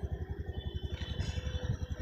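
Engine of a slow-moving vehicle running steadily at low speed, an even, rapid low-pitched pulse.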